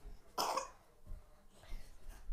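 Bare feet thudding softly on carpet during a dance, with one short, sharp burst of noise about half a second in.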